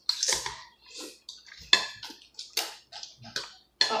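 People slurping instant noodle soup, a quick run of short, wet slurps one after another.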